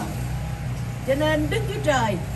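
Speech through a PA system resumes about a second in, after a brief pause, over a steady low hum.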